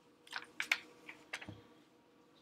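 A handful of irregular keystrokes on a computer keyboard, about six short clicks in the first second and a half.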